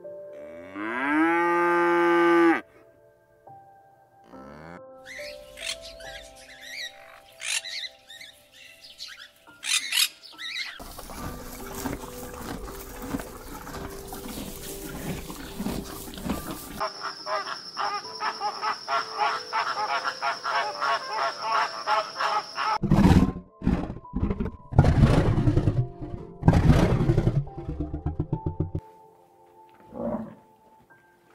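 Background music with animal calls laid over it: a cow mooing loudly at the start, mixed animal sounds through the middle, and a lion roaring in a run of rough calls near the end.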